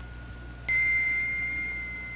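A single bell-like chime note in the soundtrack music, struck about two-thirds of a second in and ringing on, slowly fading.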